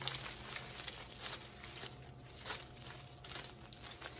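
Artificial eucalyptus garland's plastic leaves rustling and crinkling faintly as the vine is handled and pulled out, with scattered small ticks.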